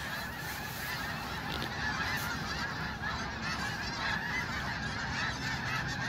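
A large flock of snow geese flying overhead, calling all at once: a dense, steady chorus of many overlapping calls.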